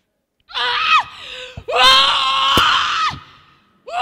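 A woman screaming into a handheld microphone: two long, high cries, the first about half a second in and the second just after it, with a third beginning near the end.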